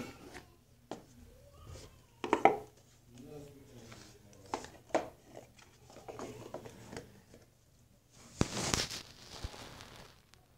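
Hands handling a small smartwatch and its cardboard box: scattered light clicks and taps, with a louder rustle near the end.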